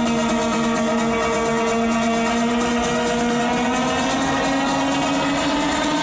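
Live electronic dance music played loud over a festival sound system: a sustained, droning synth chord with no beat, its pitch slowly rising from about halfway through, as in a build-up.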